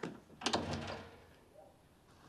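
A door closing: one sharp sound about half a second in that fades away within a second.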